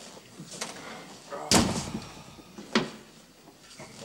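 A door being shut with a bang about one and a half seconds in, followed by a lighter knock about a second later.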